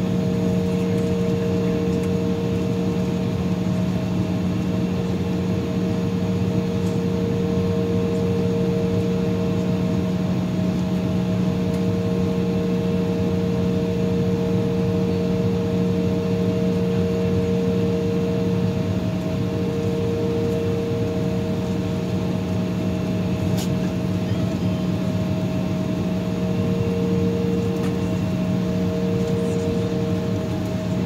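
Inside the cabin of an Embraer E-175, its GE CF34 turbofan engines idling with the air-conditioning running: a steady drone with several held tones. One short click about three-quarters of the way through.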